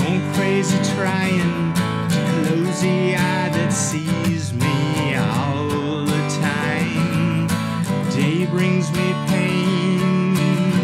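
A man singing with a strummed acoustic guitar.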